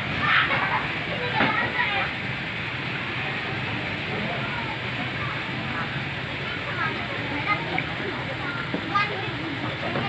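Indistinct voices of people talking at a distance over a steady background noise.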